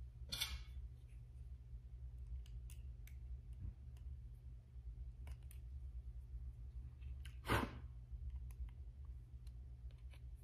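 Faint clicks and light metallic scraping from the metal parts of a lightsaber hilt being handled, as its threaded emitter piece is backed off and its blade retention screw adjusted. There is one louder scrape about seven and a half seconds in and a smaller one just after the start.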